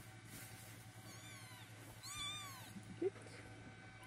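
Munchkin kitten mewing twice, thin high-pitched mews that rise and fall, the second longer and louder than the first; a short low bump follows near the end.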